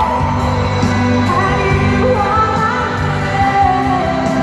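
A female singer's voice in a live pop power ballad, sung with a full band and heard from the audience in an arena. The vocal line slides up and down in runs and settles on a held note near the end.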